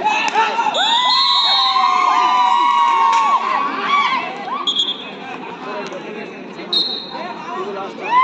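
Crowd of kabaddi spectators shouting and cheering loudly at a raider's dive, many voices at once. The shouting dies down after about four seconds.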